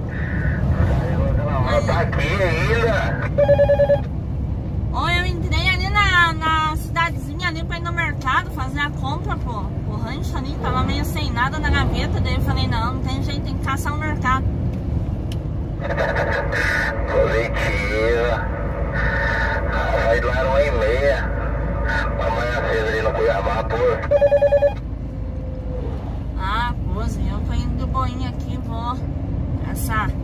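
Voices talking over a two-way radio in a truck cab, with a short pulsed electronic beep about three and a half seconds in and again near 24 seconds. Under it all runs the steady low drone of the Scania 113's diesel engine.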